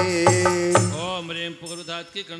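Devotional singing of a Jain puja verse with musical accompaniment. A held sung note over a low beat ends less than a second in, and softer singing follows.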